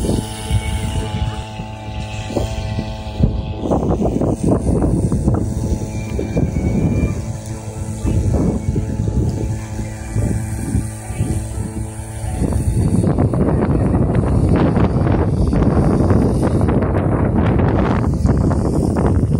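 Small engine-driven irrigation water pump running steadily with an even hum, fading out about two-thirds of the way through. Wind buffets the microphone throughout and is louder near the end.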